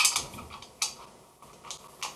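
A handful of sharp clicks and ticks from a homemade wooden pinhole camera and its metal bolt being handled, the loudest at the very start.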